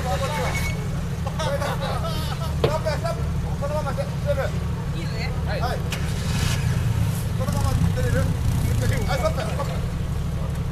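An off-road 4WD engine running steadily, working harder from about six seconds in, with people's voices calling out over it.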